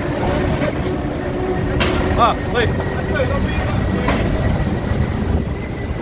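Storm-force wind buffeting the microphone: a dense, steady low rumble, with a couple of sharp knocks about two and four seconds in.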